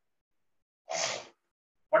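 A single short sneeze from a person about a second in, lasting under half a second.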